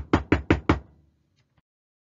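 Loud, rapid knocking on a large door: a quick run of about five raps that stops under a second in.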